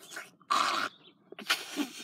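A person sniffing loudly twice, two short, noisy intakes of breath about a second apart.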